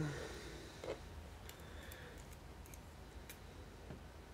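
Faint, scattered light clicks of steel pinning tweezers and a tiny lock pin against a padlock plug as the pin is worked into its hole, a few small ticks in the second half.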